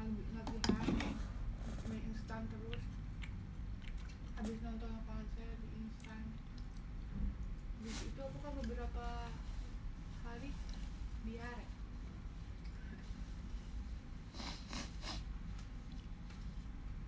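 A person chewing a mouthful of spicy noodles, with short murmured hums between bites and a few sharp clicks. A steady low room hum runs beneath.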